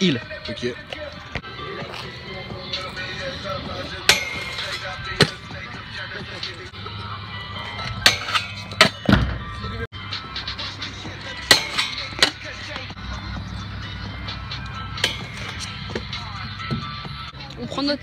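Kick scooter wheels rolling on concrete, with a series of sharp clacks and knocks from the scooter hitting a metal flat rail and landing on the ground. The loudest hits come about four seconds in, around eight to nine seconds, and around eleven to twelve seconds.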